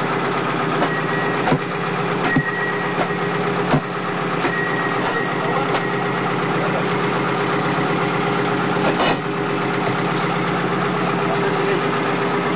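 A fishing boat's engine running with a steady drone, with a few sharp knocks now and then over it.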